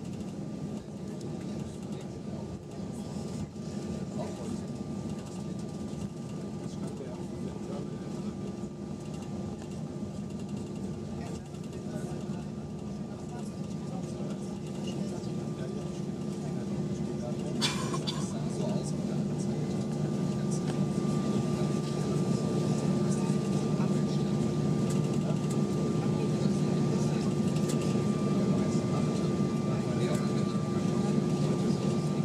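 Cabin noise of an Airbus A320-232 taxiing, its IAE V2500 engines near idle: a steady hum with a thin whine over it. About two-thirds of the way in there is a sharp click, and the engine noise grows louder soon after as thrust is added.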